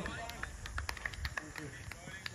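A brief spoken "okay", then a low wind rumble on the microphone with scattered faint, sharp clicks and ticks.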